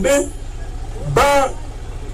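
A man's voice through a handheld microphone: the end of a phrase, then a single drawn-out syllable about a second in, over a steady low rumble.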